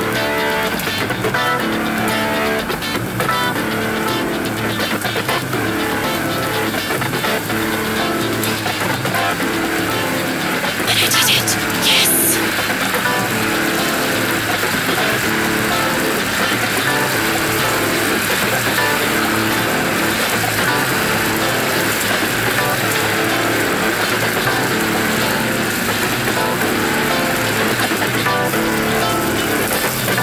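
Psychedelic rock band playing a repetitive riff with bass and drums, the pattern cycling evenly throughout. A short loud hissing noise burst cuts in about eleven seconds in, followed by a steady high whooshing noise layered over the riff.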